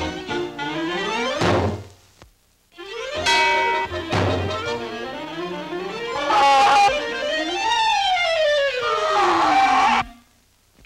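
Orchestral cartoon score with strings and woodwinds playing a comic underscore, broken by two sudden thumps about a second and a half and four seconds in, with a short near-silent break between them. Near the end a long falling glide slides down in pitch.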